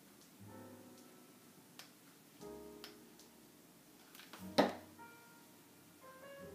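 Quiet background piano music with slow, held notes. A sharp click is heard about four and a half seconds in, louder than the music.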